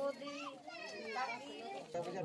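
Indistinct talking in high-pitched voices of women and children.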